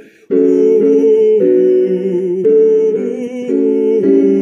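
A tenor voice humming the tenor part of a slow hymn on a sustained 'oo', with vibrato, moving note to note over an accompaniment. The singing breaks off briefly just at the start, then carries on.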